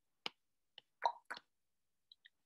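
Four short, sharp clicks within about a second, faint and close to the microphone.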